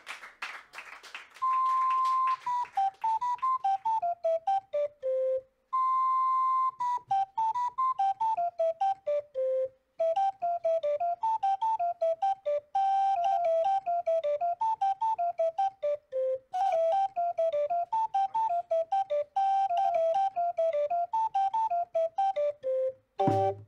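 Small wooden pipe organ playing a solo single-line melody in a clear, flute-like tone. It moves in stepwise phrases that wander and fall to a low note, the first two opening on a long held high note. Light clicks come at many of the note changes.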